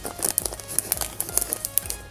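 Clear cellophane packaging crinkling in a quick run of small crackles as it is peeled open and memo pads are slid out of it, over soft background music.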